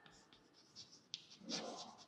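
Chalk scratching on a blackboard as letters are written: a run of short strokes, with a longer, louder stroke in the second half.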